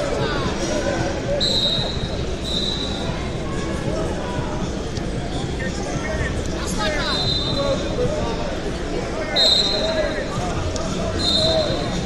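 Busy wrestling-hall ambience: spectators and coaches talking and shouting over one another, with several short, steady high-pitched tones sounding across the hall and a few brief squeaks.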